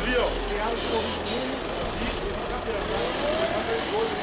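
Several voices talking and calling over one another, with a police vehicle's engine running underneath; the engine hum is strongest in the first second or so.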